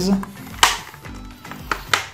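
Plastic snap clips of a Samsung NP300E5M laptop's bottom case clicking into place as its edges are pressed down: a sharp click about half a second in and a smaller one near the end.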